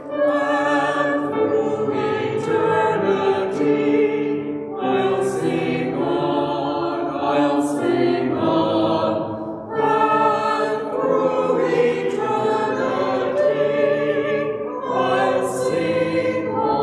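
Small church choir singing together in long, held notes that change pitch every second or so. Sharp 's' consonants cut through three times.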